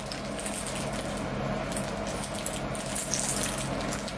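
Foil snack bag crinkling and rustling as it is tugged at to tear it open, over a steady low electrical hum.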